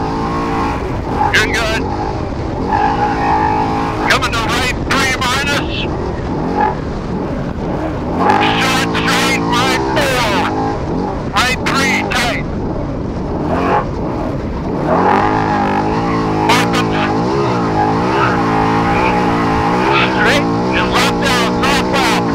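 Trophy truck's race engine running hard, its pitch rising and falling again and again as the driver accelerates and lifts over rough desert course, with short bursts of rough rushing noise several times.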